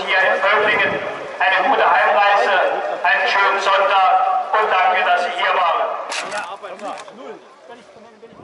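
Loud voices in short phrases, about one every second and a half, dying away over the last two seconds.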